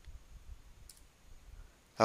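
A single faint click from a computer keyboard key about a second in: the Enter key being pressed to run a typed command.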